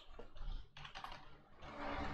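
Computer keyboard typing: a few faint, irregular keystrokes as code is entered.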